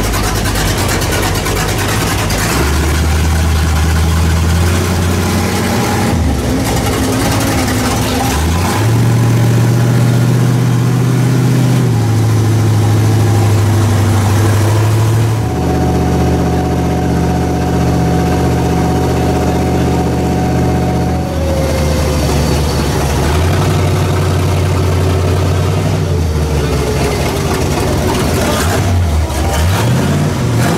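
Large engine of a custom show truck heard from inside its open cab, its pitch holding steady for a few seconds and then stepping up or down to a new level several times. From about 15 to 21 s, a different steady engine sound is heard.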